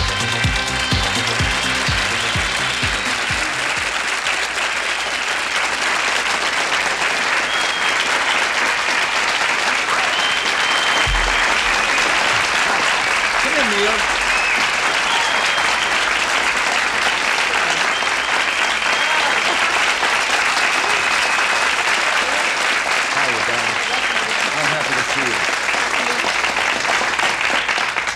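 An electronic disco track ends in its first few seconds, then a studio audience applauds steadily and loudly, with a few voices faintly audible over the clapping.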